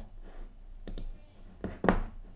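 Computer mouse clicking: four sharp clicks in two quick pairs, about a second in and near the end, the last the loudest.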